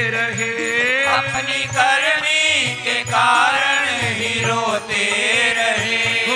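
Hindu devotional bhajan: a male voice sings a drawn-out, gliding melody over harmonium and a steady drum beat.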